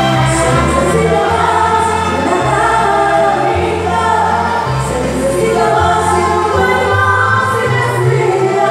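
A woman singing live into a handheld microphone over amplified backing music, with held bass notes changing about once a second.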